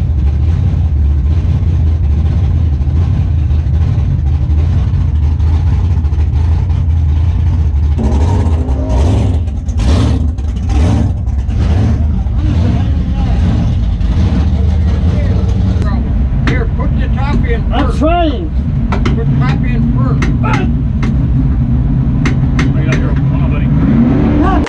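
Drag race car's engine idling steadily, heard from inside the cockpit, with the driver's muffled talk over it.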